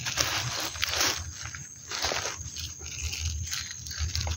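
A wooden stake being worked down into soil through plastic mulch: irregular scraping, rustling and crunching noises.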